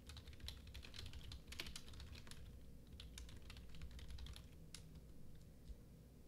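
Faint typing on a computer keyboard: runs of quick keystrokes with short pauses, thinning out in the second half.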